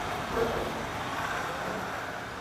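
Steady background noise with a brief faint murmur about half a second in.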